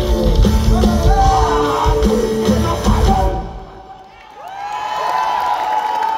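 Live band with drums, guitars and a singer playing the last bars of a song, which stops about three seconds in. A crowd then cheers and whoops.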